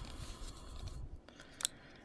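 Faint rustle of a plastic nail-sticker sheet handled by fingertips as a floral decal is lifted off it, with a single sharp click a little past halfway.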